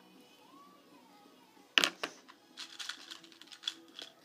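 Small plastic clicks and rattling as loom rubber bands are picked out of a plastic compartment organizer: one sharp click a little under two seconds in, then a run of lighter clicks.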